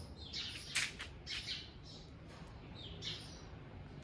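Small birds chirping: a scatter of short, high calls, several falling in pitch, over a faint background.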